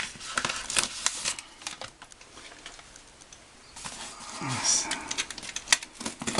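Utility knife scraping and slicing through packing tape on a cardboard box, with clicks and rustles of hands on the cardboard. A quieter pause in the middle, then more cutting and a sharp click near the end.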